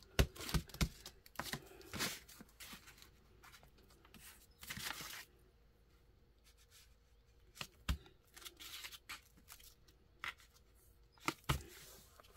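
Ink pad, stamp and paper handled on a craft table: an ink pad dabbed and set down, then a stamp laid on paper and pressed by hand. Scattered clicks and taps, with a short rustle of paper about five seconds in.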